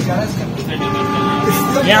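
Horn of the Kalka–Shimla toy train sounding one steady blast of about a second, heard from inside a moving carriage over its running noise.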